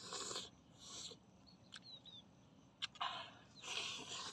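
A person biting into and chewing a grilled meat leg, with wet mouth and breathing noises coming in several short bursts.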